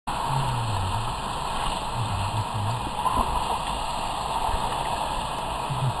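Swimming pool water heard through a submerged camera: a steady muffled underwater rush, with low muffled tones rising and fading a few times.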